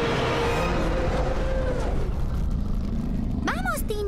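A dense, steady rumble of dramatic horror-style soundtrack, with a faint held tone. About three and a half seconds in, the rumble drops away and a loud cry sweeping up and down in pitch begins.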